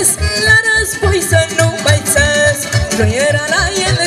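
Romanian folk dance music played live by a small band with accordion and keyboard through a PA, a wavering instrumental melody over a steady beat of about four pulses a second.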